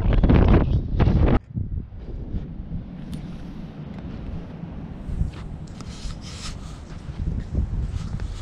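Wind buffeting the camera microphone outdoors. It is heavy for about the first second and a half, then drops to a lighter, steady rumble with a few short louder stretches in the second half.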